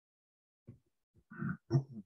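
A man's short non-word vocal sounds: a few brief murmurs beginning about two-thirds of a second in, the last two the loudest, with dead silence between them.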